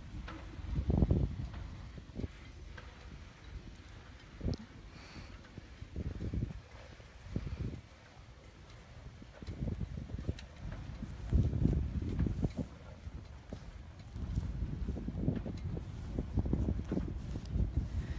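Wind buffeting a phone's microphone in irregular low rumbling gusts, coming and going every second or two.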